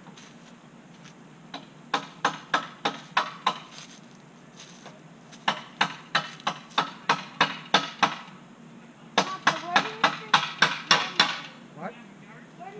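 Hammer blows on the wooden frame of a swing set being reassembled: three runs of sharp, evenly paced strikes at about four a second, with short pauses between runs.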